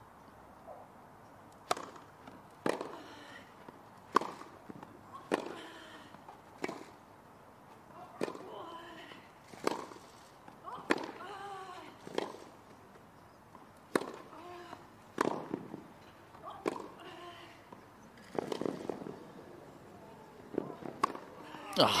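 Tennis ball struck back and forth by rackets in a long rally on a grass court, a sharp hit roughly every one to one and a half seconds, many followed by a player's short grunt. Crowd applause breaks out at the very end as the point is won.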